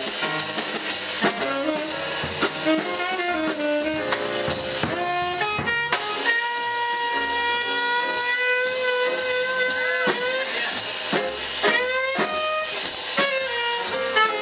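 Live small-group jazz: a tenor saxophone solos over piano, upright bass and drums with cymbals. The saxophone holds one long note from about six seconds in until about ten seconds, then runs on with quicker phrases.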